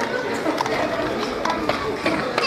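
Indistinct talking of several voices in a large hall, with no single clear speaker.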